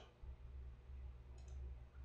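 A faint computer mouse click over a quiet, low steady hum.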